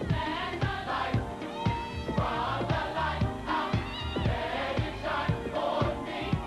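Gospel choir singing in full voice over a band with a steady drum beat, about two strokes a second.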